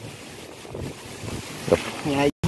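Wind buffeting the microphone, with faint rustling of leafy ground cover as a person moves through it. A brief voice cuts in near the end.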